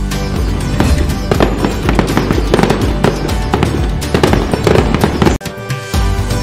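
Festive background music mixed with firework bangs and crackles. Near the end the sound cuts out briefly before the music comes back in.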